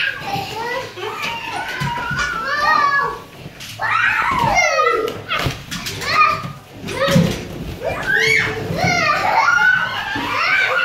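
Young children squealing and babbling while they play, with several high squeals that swoop up and down in pitch.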